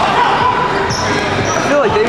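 Rubber dodgeballs bouncing and smacking on a hardwood gym floor, with players' voices in the large gym around them.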